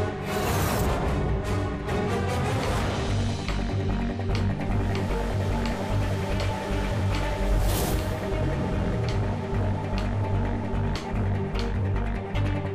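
Suspenseful background score with a steady pulsing bass beat, swelling in a whoosh near the start and again about two-thirds of the way through.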